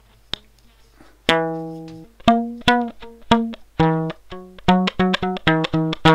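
Symetricolour Chitar, a piezo-amplified single rubber-band guitar, played through a small amp with a lo-fi sound. After a click, a run of plucked notes begins a little over a second in, each dying away quickly. The pitch shifts as the band's tension is changed, and the notes come faster toward the end.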